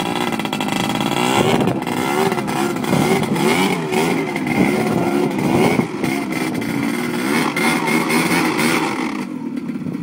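ATV engine revving up and down over and over as the quad churns through a water-filled mud hole, its pitch rising and falling in waves. It eases off a little near the end.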